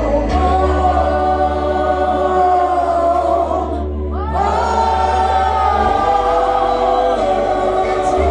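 A congregation singing a slow gospel worship song together in long held notes, over sustained low bass notes. The singing breaks off briefly about four seconds in, then carries on.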